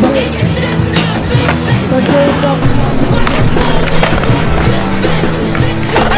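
A music track mixed with skateboard sounds: urethane wheels rolling on concrete and repeated clacks of boards popping and landing.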